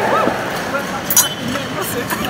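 Crowd of many people talking at once in a large hall, with a couple of sharp clinks of crockery.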